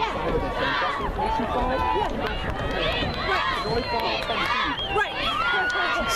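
Spectators talking and shouting over one another, many overlapping voices, with one long held shout near the end.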